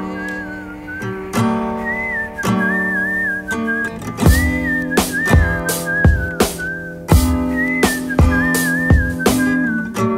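Twelve-string acoustic guitar picking out sustained chords, with a whistled melody coming in about two seconds in and harder strummed strokes from about four seconds on.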